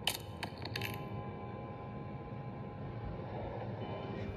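Horror short-film soundtrack heard through a tablet's speaker: a few sharp clicks in the first second, then a steady sustained drone of several held tones.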